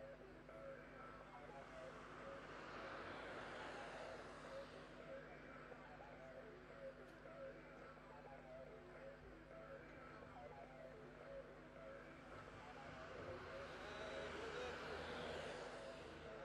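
Faint outdoor road noise: a low steady hum under a soft rushing sound that swells and fades twice, with faint distant voices.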